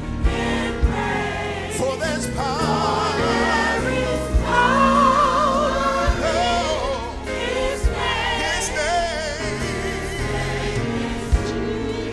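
A gospel praise team of several voices singing a worship song with vibrato into microphones, over a steady low musical accompaniment. A few short sharp thumps sound through it.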